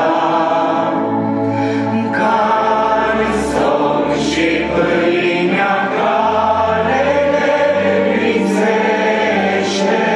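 A congregation of mainly women singing a Romanian hymn together, in long held notes with the hissing consonants of the words now and then standing out.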